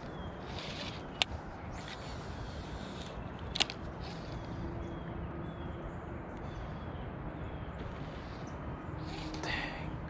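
Quiet steady outdoor background with faint high chirps, broken by two sharp clicks about a second and three and a half seconds in.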